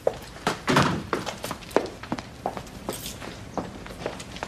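Footsteps on a hard floor, about two steps a second, with a heavier thunk of a door shutting about a second in.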